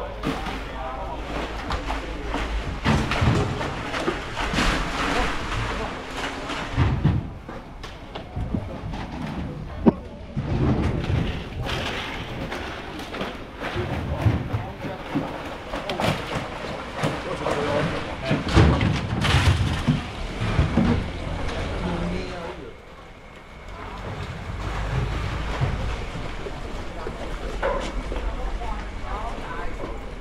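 Busy fish-port working noise: workers' voices in the background mixed with plastic fish crates knocking and being set down, with one sharp knock about ten seconds in. A low rumble runs underneath at the start and again near the end.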